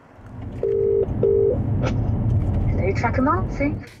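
A car's road rumble heard from inside the moving car, growing louder. Two identical short electronic beeps sound about a second in, like a phone or in-car Bluetooth tone. A brief voice is heard near the end.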